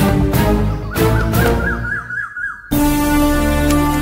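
Dramatic background music score: held notes with a warbling high trill in the middle, a short drop-out, then sustained chords.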